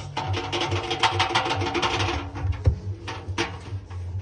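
Loose plastic drum paddle of a front-loading washing machine being wiggled by hand against the steel drum, giving rapid, irregular clicking and rattling. Music plays underneath with held notes.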